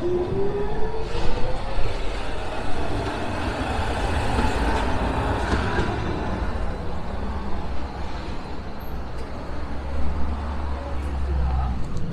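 Tram's electric traction motors whining as it pulls away, the whine rising steadily in pitch over the first few seconds, over continuous street-traffic noise. A low vehicle rumble grows louder near the end.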